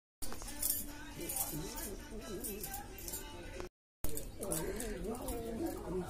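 A person's voice singing without clear words, its pitch gliding up and down. The sound cuts out completely for a moment at the start and again about four seconds in.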